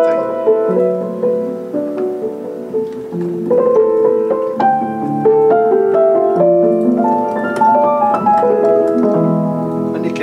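A 1982 Kawai CE-7N upright piano played in a slow passage of chords and melody with its middle practice (celeste) pedal engaged: a strip of felt between the hammers and strings gives a soft, muted tone.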